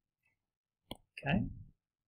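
A single sharp click about a second in, followed by a brief voiced sound from a person.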